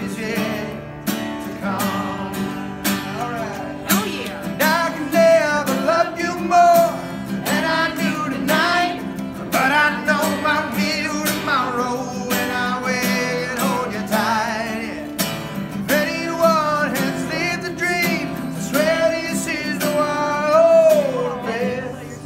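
A man singing a country song to his own strummed acoustic guitar, with several long held, wavering notes.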